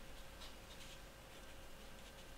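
Faint scratching of a pen writing on paper, a few short strokes.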